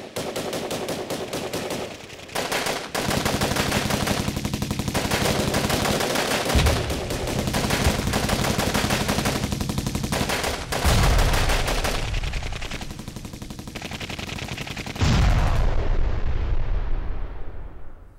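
Machine-gun fire sound effect: a long run of rapid shots with heavier, deeper blasts about six, eleven and fifteen seconds in, dying away near the end. It stages an execution by firing squad.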